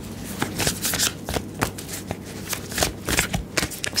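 A tarot deck being shuffled by hand: a steady run of quick, irregular card clicks and flutters.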